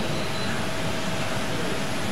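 Steady machine noise, an even rushing sound with a faint high hum held in it, that does not change over the two seconds.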